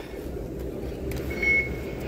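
Low steady rumble of a train-station concourse, with one short electronic beep about one and a half seconds in: an MRT fare gate accepting a tapped card.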